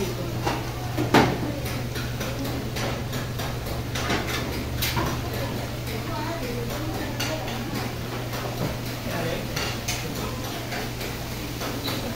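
Metal spatulas clinking and scraping against a large aluminium pot as a whole fried fish is lifted out of the bubbling deep-frying oil, with a sharp clank about a second in. A steady low hum and the faint sizzle of the oil run underneath.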